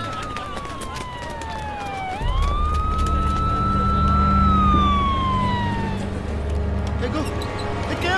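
A siren wailing in one slow cycle: its pitch falls for about two seconds, sweeps sharply back up, holds, then glides down and fades out about six seconds in. A deep steady rumble comes in underneath about two seconds in.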